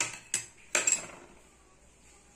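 Stainless-steel bowl knocking and scraping against a steel plate three times in about a second as flour is scooped up with it.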